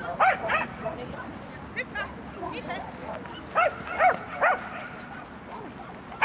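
A dog barking in short, high yips, about seven in all, in a pair, a fainter pair, then a run of three. The loudest barks come near the start and again about four seconds in.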